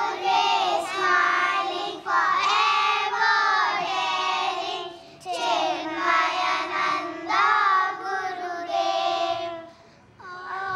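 A group of children singing a devotional bhajan together, in phrases of a couple of seconds with short pauses for breath between them.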